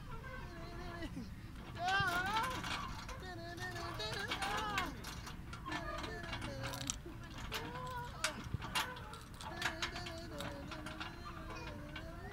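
Metal chains of playground swings clinking and creaking as the swings go back and forth, with many short clicks and recurring wavering squeaks.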